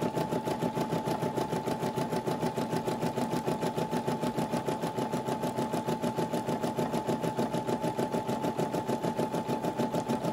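Computerized embroidery machine stitching the border of an appliqué: a steady, rapid rhythm of needle strokes, about seven or eight a second, over a constant high hum.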